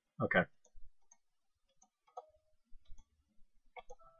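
A few faint, irregularly spaced computer mouse clicks.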